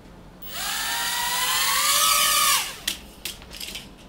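Small electric motors of a caged mini toy quadcopter whining as it powers up and flies, the pitch rising gently for about two seconds before it drops and the motors cut out abruptly. A few light knocks follow near the end.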